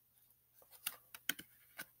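Tarot cards being handled over a cloth-covered table: near quiet at first, then about five faint clicks and taps of the cards in the second half.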